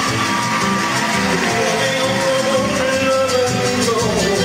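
Live band performance of a Latin song: a man sings into a microphone and holds a long note through most of the stretch, backed by acoustic and electric guitars and trumpets.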